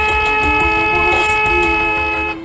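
A car horn sounding one long, steady blast, with background music still playing underneath.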